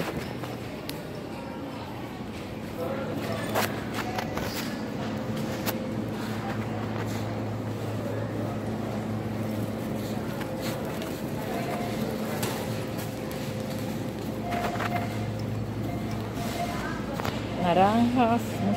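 Supermarket ambience: a steady low hum with faint voices of other shoppers, and a few sharp clicks and rattles from a wire shopping cart being pushed.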